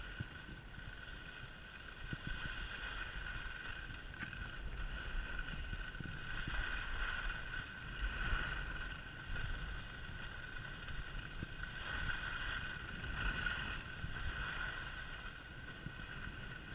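Skis sliding over groomed snow, a steady scraping hiss that swells and fades every few seconds, with wind rumbling on the camera microphone.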